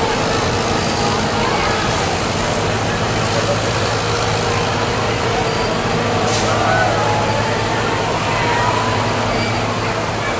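Crowd of people talking in the street over the steady low drone of a large truck engine running, with occasional distant raised voices.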